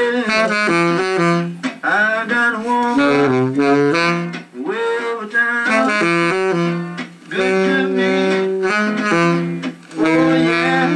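Tenor saxophone playing an improvised melody line in short phrases, with notes scooped and bent in pitch and brief gaps for breath between phrases.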